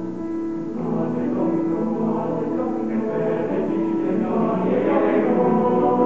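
Male high-school choir singing sustained chords in several parts, swelling louder through the passage.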